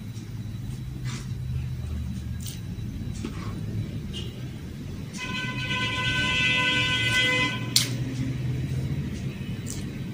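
A vehicle horn sounds one steady, unbroken note for about two and a half seconds, starting about five seconds in, over a low rumble of traffic. A few small clicks of eating are heard on either side of it.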